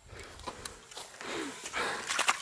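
Quiet rustling and light clicks as broken 3D-printed plastic plane parts are handled, with a short, low voice sound about halfway through and a breathy rush near the end.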